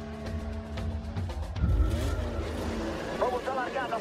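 Formula One cars' engines at a race start: a sudden surge of engine noise about two seconds in, then engine pitch rising as the cars accelerate away. Music with held notes fades under it, and an excited voice comes in near the end.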